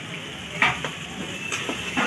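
Meat curry sizzling in a frying pan on a stove, with a metal spatula knocking once against the pan about half a second in.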